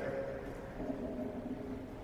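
Low room tone of a large hall in a pause between spoken sentences, with the tail of the speaker's voice fading out at the start.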